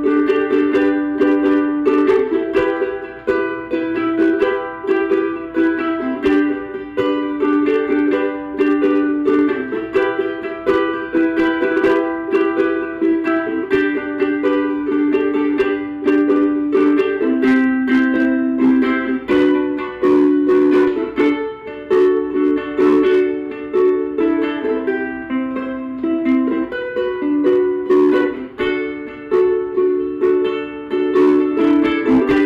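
Vangoa concert ukulele with a laminate mahogany body and Aquila nylon strings, strummed in a steady rhythm through a series of changing chords. The brand-new strings are still stretching, and the player hears them going slightly out of tune.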